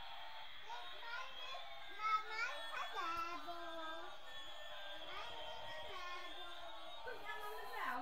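Electronic sound from a battery-powered light-up toy airplane: a steady synthetic whine that slowly rises and falls like a siren. Children's voices come in over it a few times.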